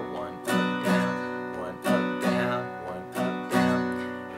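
Acoustic guitar strummed in a sixteenth-note pattern of down and up strokes, the chord ringing between strokes.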